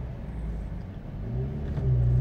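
Ford Ka+ 1.2 petrol engine heard from inside the cabin, running low at a standstill, then picking up and getting louder about a second and a half in as the car pulls away from a stop.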